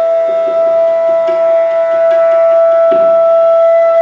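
Bansuri (bamboo flute) holding one long, steady note, with soft tabla strokes beneath it.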